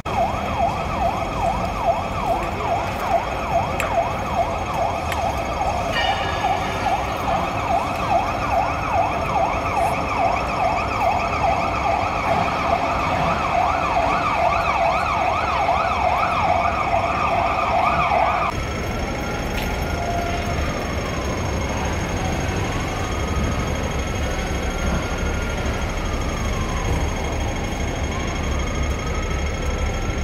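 Emergency vehicle siren: a fast yelp, rising and falling about three times a second, switches about eighteen seconds in to a slow wail that rises and falls every few seconds.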